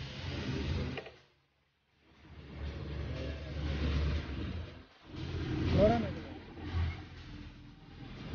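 Wind rush and engine noise from travelling along a road, cut off for a moment about a second in. A voice calls out twice with a rising-and-falling pitch over the noise.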